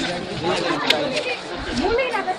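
Chatter of many people talking at once in a crowd, overlapping voices with no single clear speaker, and one brief sharp click a little before the middle.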